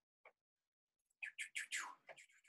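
Faint chirping of a small bird: a quick run of about five short chirps, each falling in pitch, in the last second.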